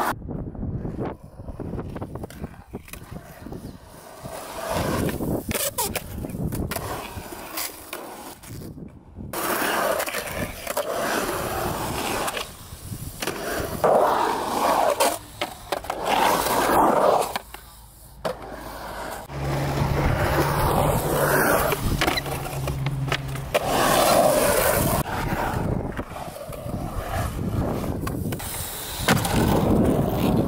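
Skateboard wheels rolling over a concrete skate bowl, the sound swelling and fading as the rider carves the walls, with sharp clacks of the board and trucks on the coping and deck. A low steady hum joins in for a few seconds about two-thirds of the way through.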